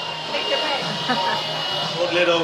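Electric paper shredder running and drawing a sheet of paper through, a steady motor whine.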